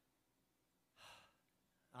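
Near silence, broken about a second in by one short, quick intake of breath from a man close to a headset microphone.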